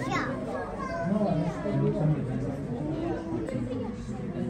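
Children's voices and people talking, with a high falling child's cry right at the start.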